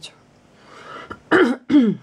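A woman clearing her throat with two short voiced sounds about a second and a half in, the second falling in pitch.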